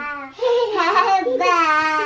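A young child's voice in a drawn-out, wordless sing-song, the pitch wavering up and down for about a second and a half.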